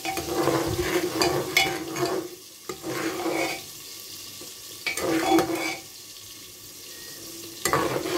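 Steel ladle stirring liquid in an aluminium pressure-cooker pot, scraping and clinking against the metal sides in several short bouts with pauses between.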